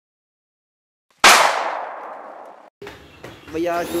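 A single sudden loud bang with a metallic ringing tail that fades over about a second and a half, then cuts off abruptly, set between stretches of dead silence.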